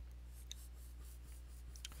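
Marker pen drawn across paper in a long wavy underline, a faint scratching, over a steady low electrical hum.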